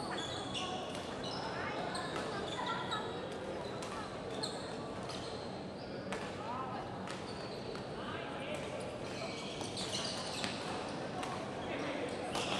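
Badminton doubles rally: sharp racket strikes on the shuttlecock and squeaking shoes on the court floor as the players move, over a steady murmur of voices in the hall.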